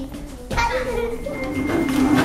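Children's voices chattering and calling out in a classroom, with a sudden change in the sound about half a second in.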